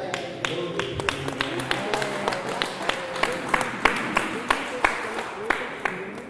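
Rhythmic hand-clapping, a sharp clap about three times a second, with a voice chanting along over it, as devotional chanting sets in at the close of the class.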